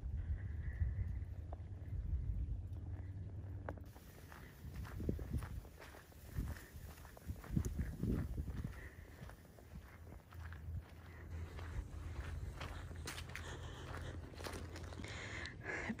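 Footsteps walking along a dirt and grass trail, faint irregular steps over a low steady rumble.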